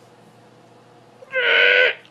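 A man's short, muffled vocal sound made through the hand held over his mouth: one steady-pitched, hoot-like note about half a second long, near the end, after a moment of quiet. He is stifling an involuntary noise.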